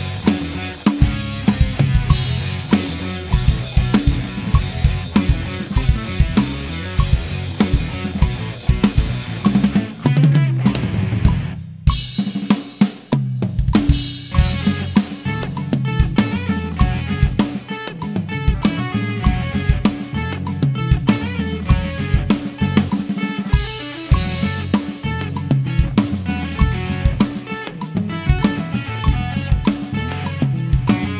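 Acoustic drum kit played in a steady groove: kick drum, snare and cymbals. About ten to fourteen seconds in there is a short break where the cymbals drop out before the beat picks up again.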